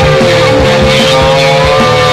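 Psychedelic rock music: a distorted electric guitar holds one long sustained note over a steady drum beat, with a second, higher note joining near the end.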